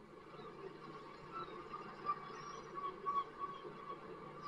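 Faint background noise with a thin, slightly wavering high-pitched whine running steadily underneath.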